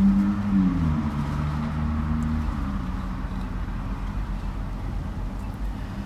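Patrol car's engine idling while stopped, a steady low hum heard from inside the cabin, with a faint steady drone whose pitch dips slightly about a second in.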